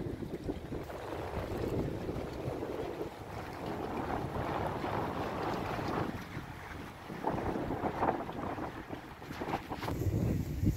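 Wind buffeting the microphone in uneven gusts, over the wash of sea water against the pier.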